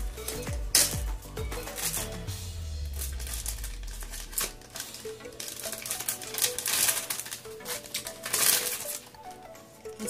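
A plastic zipper storage bag crinkling and rustling in the hands as it is opened and handled, in several loud spells, the sharpest about a second in and others near seven and eight and a half seconds in, over background music.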